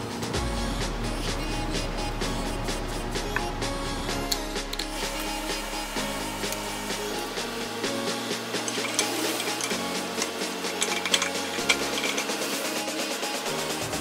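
Background electronic music with a steady beat and a sustained bass line that steps from note to note.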